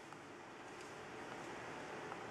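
Faint steady hiss of room tone with no distinct event.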